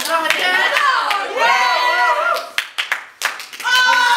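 Several high-pitched voices crying out and wailing with a wavering pitch, then a quick run of sharp smacks about two and a half seconds in, before the crying out starts again near the end.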